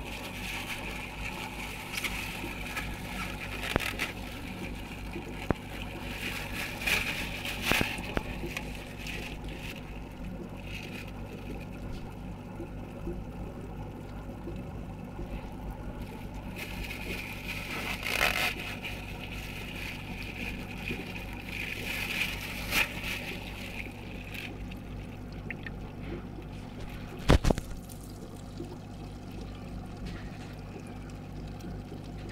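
Steady low hum and trickling water from a home aquarium, broken by scrapes and knocks of handling against the tank; the loudest knock comes near the end.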